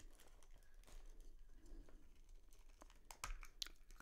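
Near silence with faint handling noise, then a few small clicks near the end as a small plastic piano-shaped pencil sharpener is pried open.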